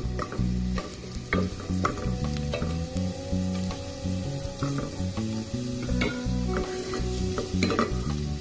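Minced garlic sizzling in hot oil in a stainless steel pot while a spatula stirs it, with irregular scrapes and taps of the spatula against the pot. Background music with a stepping bass line plays over it.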